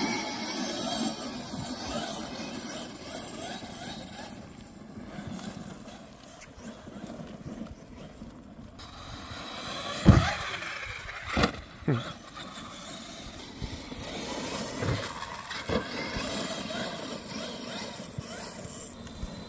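Traxxas X-Maxx electric RC monster truck driving on dry dirt, its motor whine rising and falling with the throttle over tyre scrabble. About ten seconds in there is a sharp, loud thump as the truck hits the ramp or lands, followed by a few lighter knocks.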